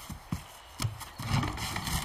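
Animated sound effect of a body bumping and scraping against a hollow wooden log: a couple of short knocks, then a rubbing scrape from about a second in.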